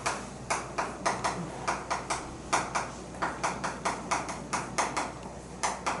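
Chalk writing on a chalkboard: a steady run of short, sharp taps and scrapes, roughly four a second, as each stroke of the letters is made.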